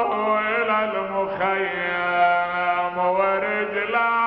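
A man chanting a mournful Arabic elegy unaccompanied, in long held notes with wavering ornaments.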